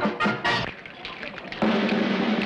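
Band music with drums ending in a few sharp drum strikes, followed by a brief lull and then a steady low held note coming in near the end.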